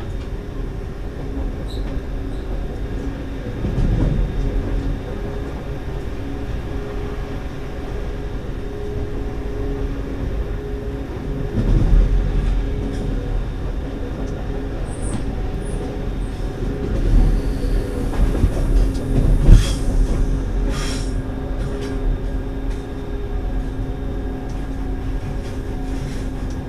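Electric train running on the track, with a steady low rumble of wheels on rail and a steady hum. It grows louder and clatters as the train rolls over points at about 4, 12 and 17 to 20 seconds in. A few short high-pitched squeaks come between about 15 and 21 seconds.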